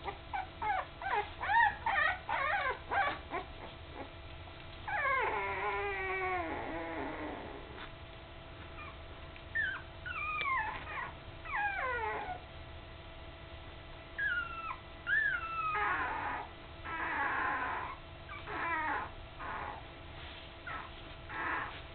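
Young puppies whimpering: a run of short, squeaky gliding cries, a long falling whine about five seconds in, and more cries later, with rougher, noisier sounds near the end.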